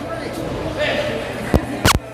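Two sharp smacks of wrestlers' impacts in a lucha libre ring near the end, about a third of a second apart, over a murmur of voices in a hall.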